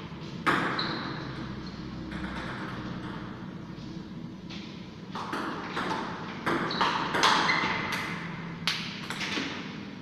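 Table tennis rally: the ball clicking off rubber paddles and the Stiga table top, a single hit about half a second in, then a quick run of hits at about three a second that stops near the end, with the clicks ringing briefly in the room.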